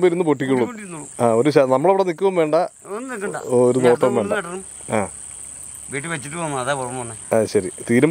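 A man talking in bursts, over a steady high-pitched drone of insects.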